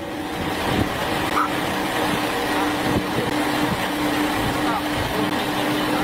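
Steady engine hum and road noise inside a moving vehicle's cab, with faint fragments of a voice now and then.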